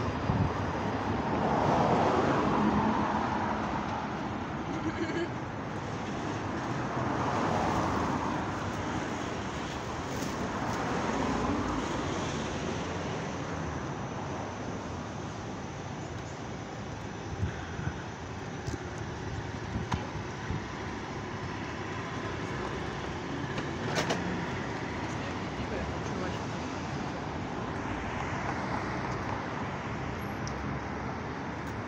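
City street traffic noise: a steady background of vehicles, swelling several times as cars pass, with a few short clicks and one sharp knock about three-quarters of the way through.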